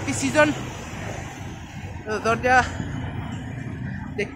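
Steady rumble of street traffic, with short snatches of a man's voice near the start and again about two seconds in.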